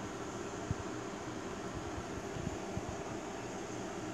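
Steady whirring air noise with a low hum, like a ventilation fan running inside a small grow tent. There are a few faint low bumps, likely handling of the handheld camera.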